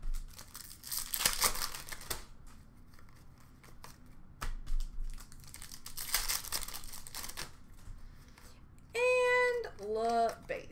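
Hockey card pack wrappers crinkling and tearing as the packs are opened by hand: two spells of crackly rustling, one about a second in and a longer one from about 4.5 to 7.5 seconds. Light clicks of cards being handled fall in between. A short high-pitched voiced sound comes near the end.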